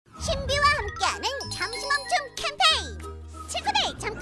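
Children's cartoon jingle with tinkling chime sparkles and a steady bass line, under a squeaky, high-pitched cartoon character voice whose pitch swoops up and down.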